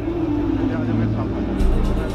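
Background music in a low, sustained drone under the news footage, with a deeper rumble coming in near the end.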